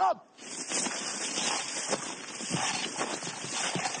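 Steady rustling and scraping of soldiers in camouflage kit crawling over leafy ground.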